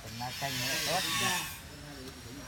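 A man's voice making short, unclear utterances, overlaid by a hiss lasting about a second.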